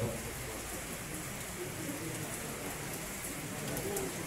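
A steady hiss of even background noise, with faint low voices murmuring in the room.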